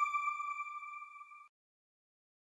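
The last note of a TV channel's closing ident jingle: a single ringing, chime-like tone fading away, cut off abruptly about one and a half seconds in.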